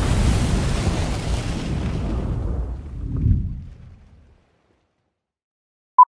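A fiery whoosh-and-boom sound effect for an animated flame logo, loud at first and fading away over about four seconds, with a low swell about three seconds in. Right at the end comes one very short high beep: the "2-pop" of a film-leader countdown.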